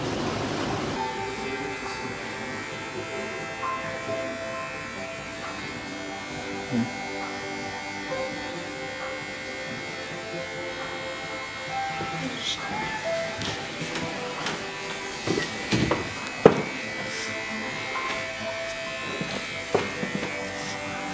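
Electric hair clippers buzzing under background music with steady held notes. A few sharp knocks come near the end.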